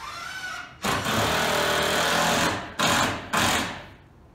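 Cordless impact driver hammering a screw into timber: one long burst of about two seconds, then two short bursts.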